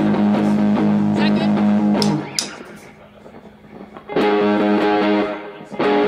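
Electric guitar and bass playing the slow, half-time intro of a rock song in long held chords. The first chord rings for about two seconds and dies away, then a second chord is struck about four seconds in and held.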